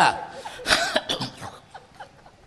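A short burst of human vocal noise, cough-like, comes about two thirds of a second in and dies away over the next second, right after the end of a spoken phrase.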